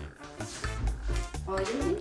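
A wet puppy shaking itself off after its bath, a quick fluttering rattle of its coat and ears.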